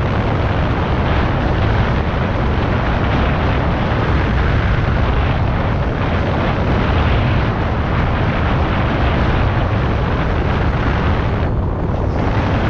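Steady, loud wind buffeting on the microphone of a camera carried by a rider on a moving electric unicycle, a heavy low rumble with a hiss over it that thins briefly near the end.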